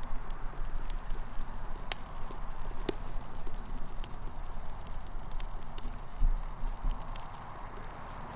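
Small redwood model house on fire: a steady rushing hiss of flames with scattered sharp pops and crackles from the burning wood, over a low rumble.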